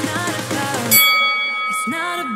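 Background pop music with a singing voice. About a second in, a bell-like chime rings out with a few steady tones while the beat drops away: an interval-timer chime marking the switch to the rest period between exercises.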